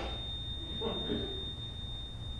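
A steady high-pitched electronic tone held unbroken: a heart-monitor flatline sound effect as the patient 'dies'.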